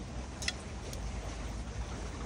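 Two light clicks from fishing rod sections being handled, about half a second and a second in, over a steady low background rumble.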